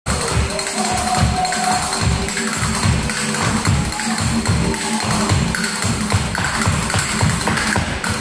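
Flamenco music with castanets clicking over a steady beat of low thumps.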